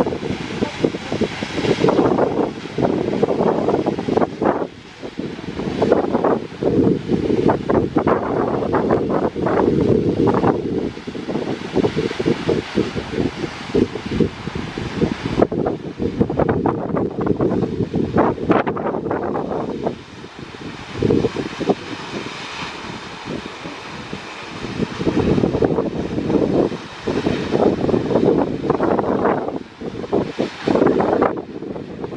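Rushing waterfall, a loud, uneven noise that surges and falls, with gusts of wind buffeting the microphone and a brief lull about twenty seconds in.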